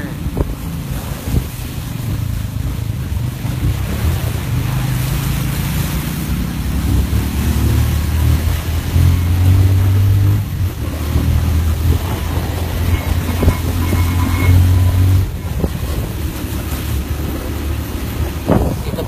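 Wind buffeting a phone's microphone with a loud low rumble, heaviest in the middle of the stretch, as the phone is carried along in motion.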